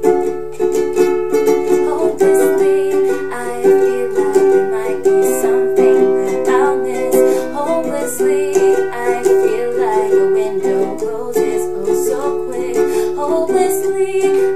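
Ukulele strummed steadily through the song's G–C–Em–D chord progression, with a woman's voice singing along softly in places.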